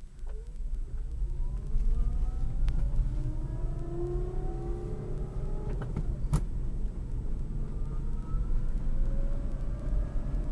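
The electric drive of a battery-converted Toyota Tercel whines as the car accelerates, the whine rising in pitch and then climbing more slowly, with no engine sound. Under it is a steady low road and tyre rumble, with a sharp click about six seconds in.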